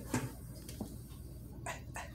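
A few soft taps of a bare foot on a digital bathroom scale, waking it up after it shut off; the last two come close together near the end.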